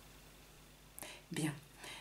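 A pause in a woman's talk: near silence, then a short breath and a single spoken word, "bien".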